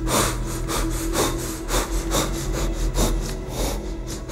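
A hooded man breathing hard and fast in fear, harsh rasping breaths several a second, over a low steady drone.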